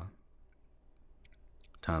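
A few faint, light clicks from a stylus tapping and writing on a drawing tablet in a short pause, then a word of speech near the end.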